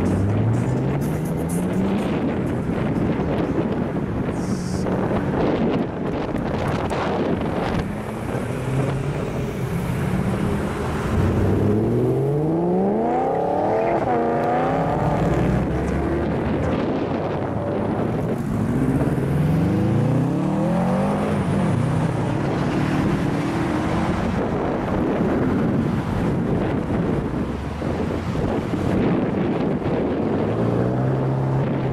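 A line of cars and pickup trucks driving past one after another, engines rising in pitch as each accelerates away. One car revs hard about twelve seconds in, the loudest moment.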